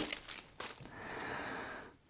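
Plastic packaging crinkling as a power adapter and its cable are handled: a soft rustle of about a second that stops just before the end.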